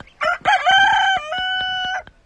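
A rooster crowing once: a couple of short opening notes, then a long, level held note.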